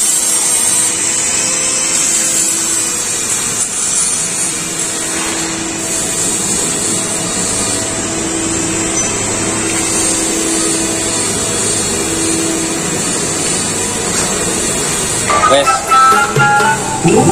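Steady workshop noise with an electric power tool running at a steady pitch on and off. Music comes in near the end.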